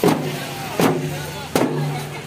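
Folk drums, a two-headed barrel drum beaten with a stick and large frame drums, struck in a steady beat about once every three-quarters of a second, with voices between the strokes.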